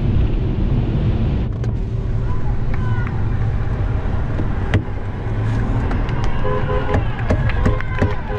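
Cabin of a moving car with a window down: a steady low rumble of engine and road, with a single sharp knock about halfway through. In the second half, short horn toots and shouts from the roadside crowd come in through the open window.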